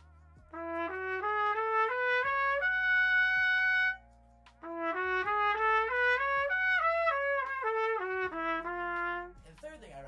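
Solo trumpet playing a quick stepwise ascending lick up to a held high note: a practice rep aimed at the high G sharp with more tongue angle and airspeed. It then plays the run a second time, climbing and stepping back down to a held low note.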